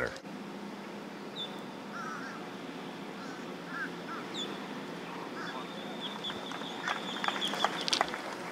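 Birds calling over a quiet outdoor background: a few short, separate chirps, then a thin, high, steady note through the second half.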